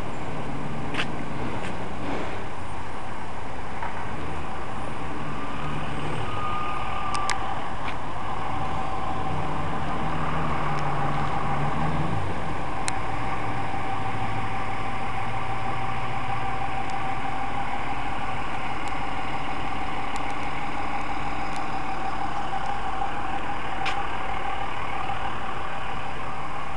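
A car's engine and road noise while driving slowly, the engine note shifting with speed. A steady high hum sets in about a third of the way through, and there are a few faint ticks.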